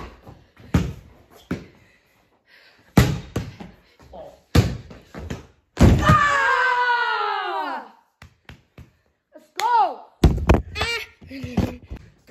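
A basketball bouncing and thudding several times, with a long falling yell about six seconds in.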